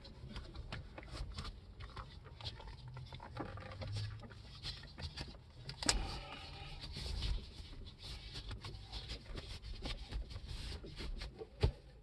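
Quiet rubbing, scuffing and creaking of a microfiber leather steering wheel cover as it is stretched and pushed onto the wheel rim by hands in disposable gloves, with many small clicks and a sharper click about six seconds in.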